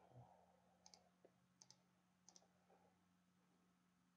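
Faint computer mouse clicks: three press-and-release double clicks about two-thirds of a second apart, with a few fainter ticks, over near-silent room tone with a low steady hum.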